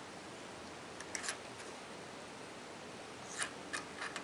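A few short scratchy clicks from small objects being handled, a cluster about a second in and two more near the end, over a steady faint hiss.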